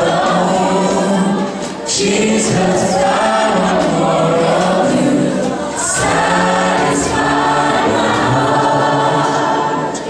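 A vocal group singing a gospel worship song, the sung phrases breaking briefly about two seconds and six seconds in.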